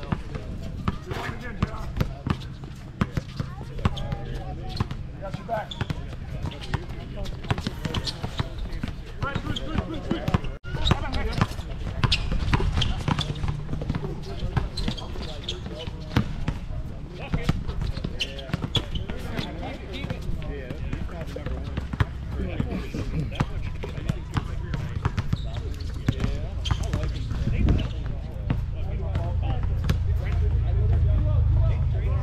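A basketball bouncing repeatedly on an outdoor hard court during a game, in short irregular runs of dribbles, with players' voices in the distance.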